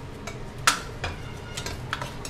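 Metal spatula clicking and scraping against a coated wok while stirring dried chillies, ginger slices and Sichuan peppercorns in a little oil. There are about five sharp clicks, and the loudest comes just under a second in.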